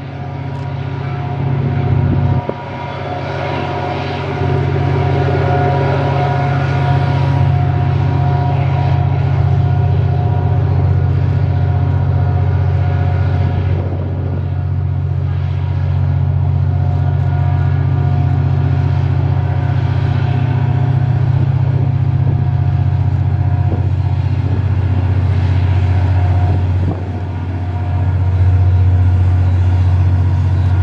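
EMD SD39 diesel-electric locomotive's 12-cylinder turbocharged engine running steadily under power as the freight train approaches, a deep low drone with fainter higher tones. It grows louder in the last few seconds.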